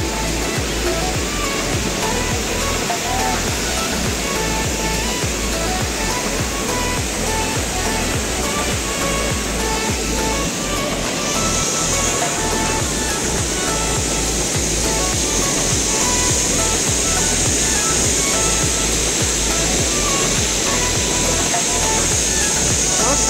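Steady rushing of Dassam Falls, a large waterfall, mixed with background music. The hiss of the water grows brighter about halfway through.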